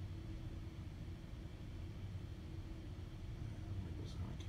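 Steady low hum of room noise with a faint constant tone, with no distinct events.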